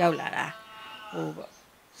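A woman's voice: a breathy syllable, then a drawn-out, low, hum-like vocal sound, and a short pause near the end.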